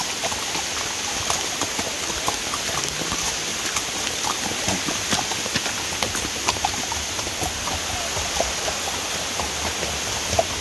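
Steady heavy rain on the rainforest canopy, with horses' hooves clopping as they walk on a wet, muddy dirt trail and many scattered sharp taps of drops and hooves.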